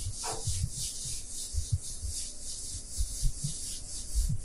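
Whiteboard duster wiping marker off a whiteboard: quick back-and-forth scrubbing strokes, with soft low thuds as the board is pressed.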